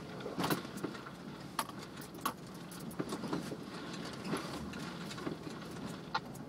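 Off-road Jeep crawling over rock, heard from inside the cabin: the engine runs low and steady under irregular sharp rattles and clinks, about a dozen of them, from loose things inside shaking over the bumps.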